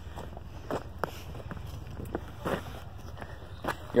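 Footsteps on an asphalt trail: a handful of uneven, soft steps.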